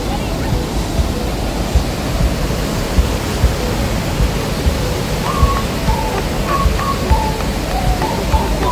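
Athabasca Falls: the loud, steady rush of heavy whitewater pouring over the falls, with irregular low thumps.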